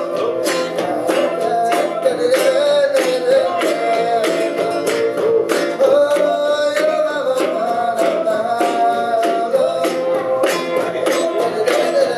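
Live Romani folk band playing: a strummed acoustic guitar and a male voice singing a wavering melody over a steady beat struck on a cajón.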